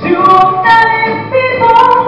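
A woman singing a slow pop song live into a handheld microphone through PA speakers, holding notes that step from one pitch to the next.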